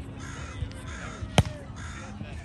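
A volleyball struck hard by a player's hand once, a sharp slap about one and a half seconds in, which is the loudest sound. A crow caws three times in the background.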